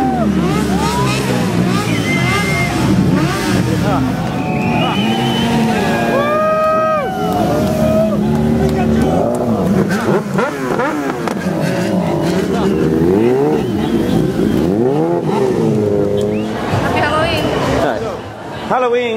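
Several sport motorcycle engines revving over and over, their pitch sweeping up and falling back, often overlapping, with voices in the crowd underneath.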